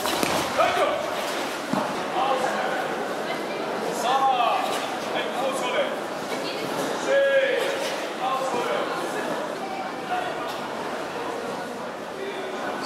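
Voices of a crowd of karate trainees in a large hall: short calls and shouts over background chatter, with a sharp knock or two near the start.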